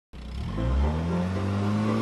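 Car engine revving up, its pitch climbing slowly and steadily after a low rumble at the start.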